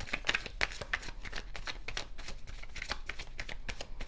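A tarot deck being shuffled by hand: a quick, irregular run of soft card clicks and flicks.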